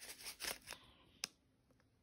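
Plastic zip-lock jewelry bag crinkling as it is handled, a few brief faint rustles in the first second or so.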